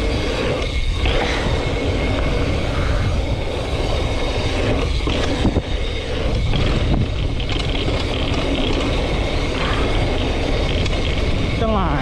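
Steady wind rush on the microphone with knobby tyres rolling over a dirt trail and rattle from a Schwinn Axum DP mountain bike being ridden at speed.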